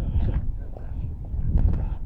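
Strong wind buffeting the phone's microphone: a low, rumbling noise that rises and falls in gusts, which even a wind muff does not stop.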